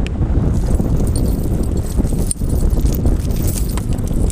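Metal snow chain links clinking and jangling irregularly as the chain is handled and untangled, over a heavy rumble of wind on the microphone.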